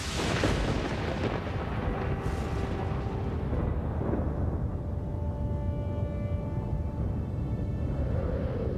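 A sudden crash like a thunderclap, whose hiss fades over about two seconds into a steady deep rumble with a rain-like hiss, over held notes of music.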